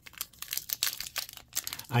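Foil Pokémon booster pack wrapper crinkling as it is picked up and handled, a run of quick, irregular crackles.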